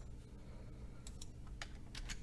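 A few faint computer keyboard keystrokes as text is entered into a form field.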